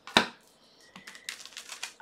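A deck of tarot cards handled and shuffled in the hands: one sharp tap just after the start, then a run of light card clicks in the second half.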